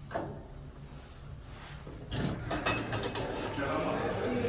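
Schindler elevator doors sliding open about two seconds in, with a quick run of clicks and rattles from the door mechanism, and the surrounding noise rising as the doors part. A single click sounds at the very start.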